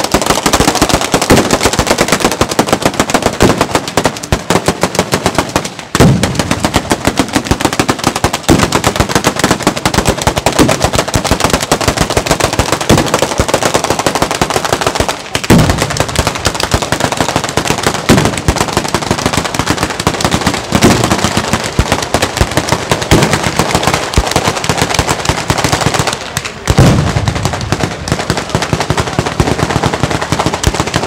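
Batteria sanseverese: long chains of firecrackers laid on the ground going off in a dense, unbroken rattle of rapid bangs. Short lulls about six seconds in, halfway through and near the end are each followed by heavier blasts.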